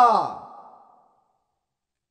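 A man's reading voice trailing off at the end of a phrase: a drawn-out vowel falling in pitch and fading away within about half a second, followed by dead silence.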